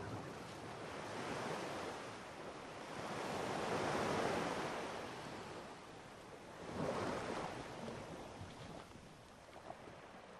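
Sea surf washing onto a sandy beach, swelling twice, most loudly about four seconds in and again about seven seconds in, then fading.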